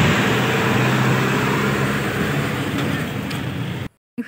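Steady engine hum and road noise heard from inside a Tata Starbus Ultra bus on the move, cutting off suddenly just before the end.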